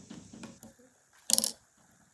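A short, sharp clatter of a few quick hard clicks about halfway through, with soft low handling sounds before it.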